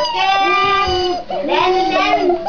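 A young child's high voice singing, several drawn-out, wavering notes with brief breaks between them.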